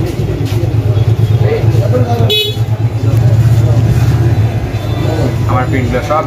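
Motor vehicle engine running with a steady low rumble, and a short high-pitched horn beep a little over two seconds in.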